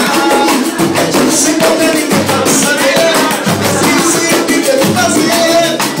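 Live pagode from a small samba group: surdo bass drum, a small stringed instrument and hand percussion keep a steady, dense beat, with voices singing over it.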